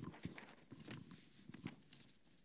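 Faint handling noise of paper notes: scattered soft rustles and light clicks.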